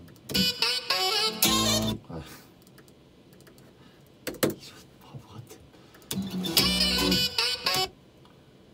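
Two short bursts of music with a wavering, voice-like melody, the first about two seconds long near the start and the second near the end, each played back from the computer. A few mouse clicks sound in the quiet gap between them.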